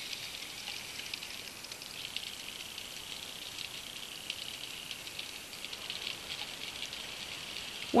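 Underwater ambience at the seabed: a steady fizzing hiss with many faint crackles and clicks running through it.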